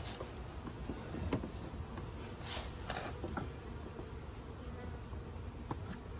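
Honeybees buzzing steadily around an open hive. Over the buzz come a few light knocks and scrapes, about a second in and again around three seconds in, as a plastic hive beetle trap is worked down between tightly packed frames.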